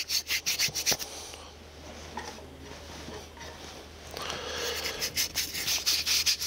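Fingers rubbing fine sawdust into wet glue along the corner joints of a dovetailed wooden box, so that the sawdust and glue fill the joint lines. A quick run of scratchy rubbing strokes comes in the first second or so, softer rubbing follows, and brisk strokes pick up again over the last two seconds.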